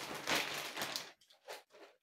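Clear plastic packaging crinkling as a swaddling blanket in its bag is handled, dense for about the first second, then a few short rustles.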